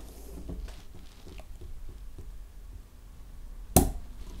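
Cork being eased out of a champagne-style bottle of oude gueuze lambic: faint small creaks and clicks of the cork turning, then a single short pop near the end as it comes free, with not too much pressure behind it.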